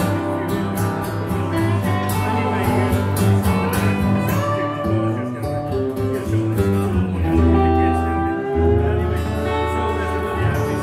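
Dobro resonator guitar played with a slide over a strummed acoustic guitar, an instrumental passage with no singing.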